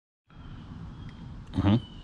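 Faint outdoor background with a thin steady high tone, then a man's short "mm-hmm" hum near the end.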